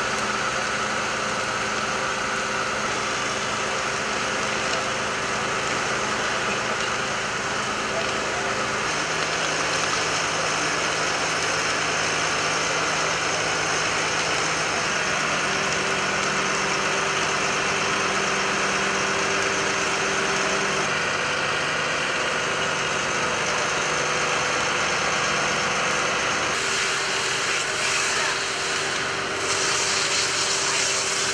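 Fire engines' diesel engines running steadily to drive the hose pumps, a low hum whose pitch steps to a new level a few times, over a constant rushing hiss of hose water and the burning building.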